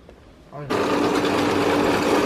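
A fodder chaff cutter starts up with a sudden jump in level about two-thirds of a second in and then runs loud and steady with a constant hum underneath. It is running again on a newly fitted drive belt, replacing one that snapped when a corn cob jammed in the machine.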